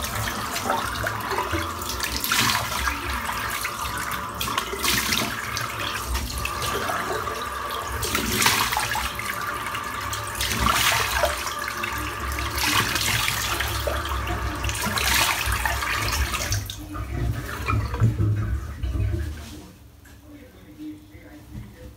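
Bathroom tap running into a sink, with irregular splashes as water is scooped up and rinsed off the face; the water stops near the end, followed by a towel rubbing over the face.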